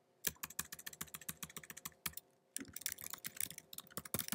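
Typing on a laptop keyboard: two quick runs of key clicks with a short pause about two seconds in.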